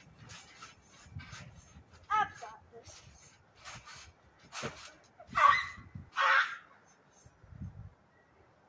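Children bouncing on a backyard trampoline: a string of short thumps and rattles from the mat and netting, with a high squeal about two seconds in. Two loud shrieks come near the middle, the loudest sounds here.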